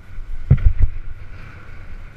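Wind buffeting the microphone of a helmet-mounted camera on a mountain bike, with a steady low rumble from the ride over rough ground. Three quick thuds about half a second in come from a bump jolting the bike and camera.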